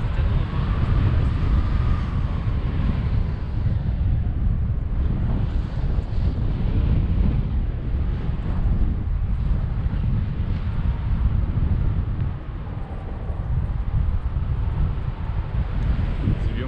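Wind buffeting the microphone of a camera on a selfie stick during a tandem paraglider flight: a loud, steady, rumbling rush of air.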